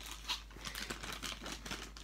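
Crinkly plastic blind-bag packaging being picked up and handled, a run of irregular small crackles.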